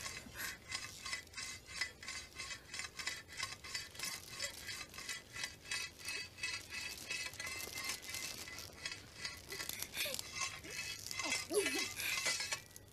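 Rhythmic scraping, about three strokes a second, keeping an even pace.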